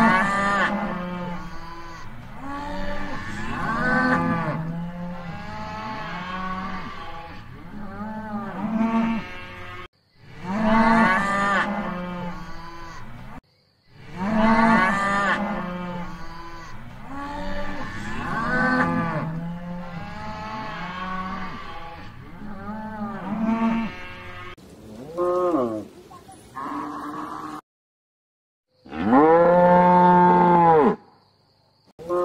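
Cattle mooing: several cows calling one after another and over each other, each moo rising and falling in pitch. The sound cuts off abruptly and starts again a few times, about 10 s in, near 13 s and near 28 s, as separate recordings spliced together.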